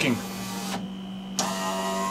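Electric power-window motor and regulator in a 2010 Mitsubishi Outlander door, running twice: a short whirring run, a brief stop, then a second run starting about a second and a half in. This is a test of the newly reattached regulator and glass.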